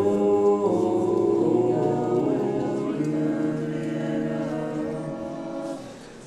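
Church choir singing an unaccompanied Orthodox chant in several voices, holding long chords that shift every second or so; the phrase grows quieter and dies away near the end.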